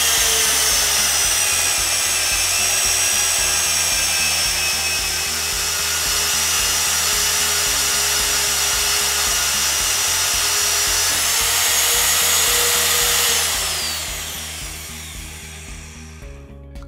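Champion AC50 magnetic drill press running under load, its motor whining steadily as an annular cutter cuts through steel plate. About three quarters of the way through, the whine falls in pitch and fades away as the motor spins down with the hole finished.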